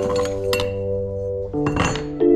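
Short metallic clinks as a copper pipe is picked up off a hard stone surface, with a second brief clatter near the end, over steady piano background music.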